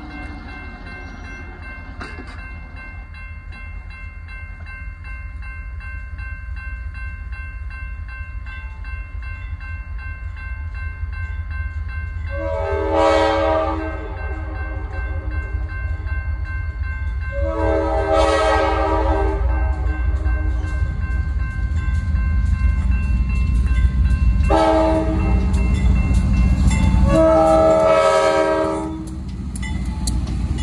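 Diesel freight locomotive air horn sounding four blasts, long, long, short, long: the standard warning for a grade crossing as the train approaches. A crossing bell rings throughout, and the rumble of the diesel engines grows louder over the last third as the locomotives reach the crossing.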